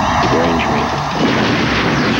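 Movie-trailer war-scene sound effects: a loud, continuous din of gunfire, with a man shouting over it about half a second in.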